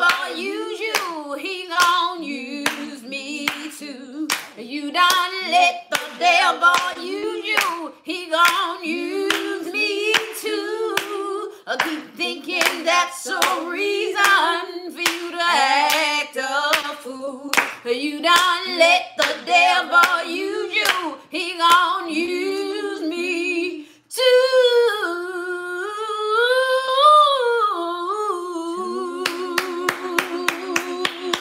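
Women singing a gospel song unaccompanied, with hand clapping on the beat at about two claps a second. About 24 seconds in, the clapping stops while a lone voice holds a long, wavering melodic line, and the clapping starts again near the end.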